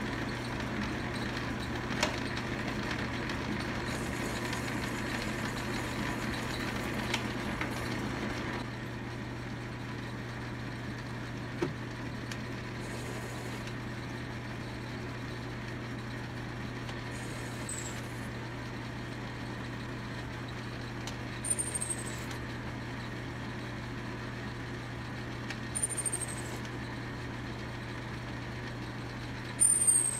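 A 10-inch Logan metal lathe running steadily with a constant motor hum while a threading tool cuts a 14 TPI thread in an aluminium part. It gets slightly quieter about nine seconds in. A few brief high squeaks come in the second half.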